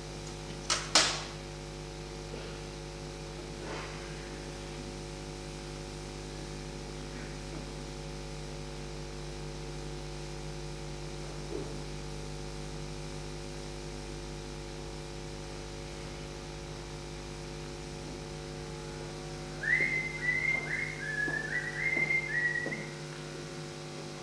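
Steady electrical mains hum on the recording, with a sharp click about a second in and a string of short, high pitched notes stepping up and down near the end.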